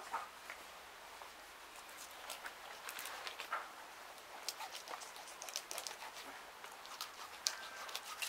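Large kitchen knife cutting into the tough, scaled skin of a big silver carp behind the head: an irregular scatter of faint sharp clicks and scrapes.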